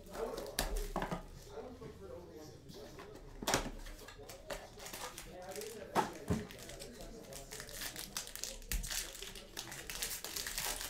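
Plastic shrink wrap and a foil trading-card pack crinkling and tearing as they are handled and pulled open: scattered sharp crackles, the loudest about three and a half and six seconds in.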